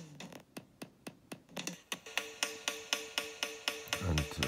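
Electronic drum loop from a DigiStix drum machine, chopped and re-sequenced by the GlitchCore glitch app on an iPad, with sharp sixteenth-note hits about four a second. The hits thin out in the first half, then a steady pitched tone runs under them from about two seconds in.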